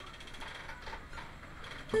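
Faint hiss and room noise from a home microphone recording, with a few soft clicks, before the playing begins. A first plucked guitar note comes in right at the end.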